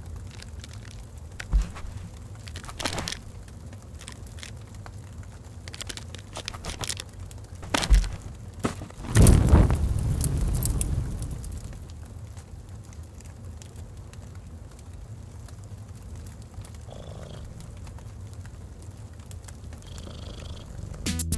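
Crackling of a log fire, with scattered sharp pops over a low steady rumble. About nine seconds in, a loud deep rush swells and fades away over roughly two seconds.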